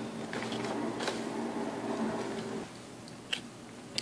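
Metal spoon digging and scraping through soft chocolate in a plastic tray: faint soft scrapes and a few light clicks, the sharpest one near the end, over a steady low background hum that drops a little past halfway.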